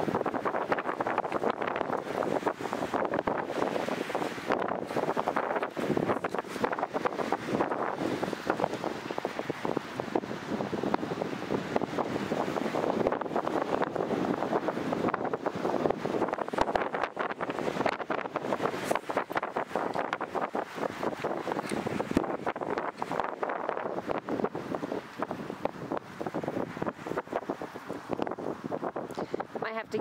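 Wind blowing across the camera's built-in microphone: a steady, rough, crackling noise that covers everything else.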